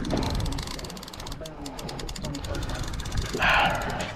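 A fishing reel clicking rapidly and evenly under the strain of a big shark on the line, over a low rumble of wind and water. A short, louder rush of noise comes about three and a half seconds in.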